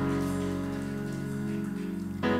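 Soft background music: a steady sustained chord held through a pause in the preaching.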